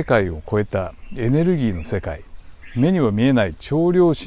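A voice narrating in Japanese, with a steady high-pitched tone underneath.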